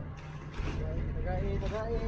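Faint men's voices talking in the background over a steady low engine hum.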